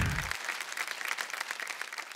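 Audience applause, a dense patter of many hands clapping that fades gradually.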